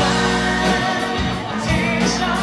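Live band music: a male lead vocal sung into a handheld microphone over held guitar and bass chords, with a few drum hits.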